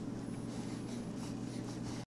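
Faint, soft rustling of cotton baby blankets as a baby moves his arms against them, over a steady low hum.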